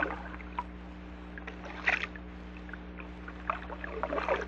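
A quiet passage of a 1950s vinyl record: a steady low hum under scattered short, bubbly blips, a few each second, that sound like water.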